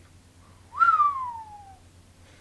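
A single whistled note that jumps up quickly and then glides steadily down in pitch for about a second before fading out.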